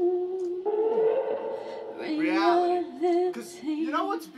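Freely improvised music: a voice holding long, wavering sung notes without clear words, with a swooping slide in pitch about two seconds in.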